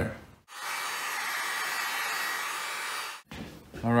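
Heat gun blowing steadily, drying a thin line of water-based leather glue until it is tacky. It starts and stops abruptly.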